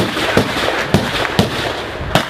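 Gunfire: about four sharp shots roughly half a second apart, over a dense noisy background.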